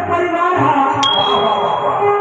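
Background music, and about a second in a click with a single bright bell ding that rings on for about a second: the notification-bell sound of a subscribe-button animation.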